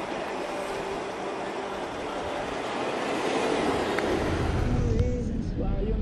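4x4 SUV driving along a sandy dirt trail: a steady rush of wind and road noise, with a low engine and tyre rumble building from about four seconds in.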